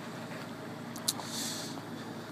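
A 2012 Chevrolet Impala's 3.6-litre V6 idling, heard quietly from behind the car at its dual exhaust. A short click about a second in, followed by a brief hiss.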